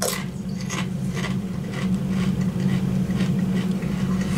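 Crunchy corn tortilla chips being chewed, an uneven run of crisp crunches with a steady low hum underneath.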